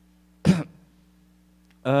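A man clears his throat once into a microphone, a short sharp burst about half a second in. Near the end comes a drawn-out hesitant "uhh", with a faint steady hum from the sound system underneath.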